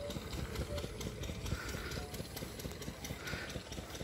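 Footsteps of a person walking along a dirt field path, with low rumble on the microphone.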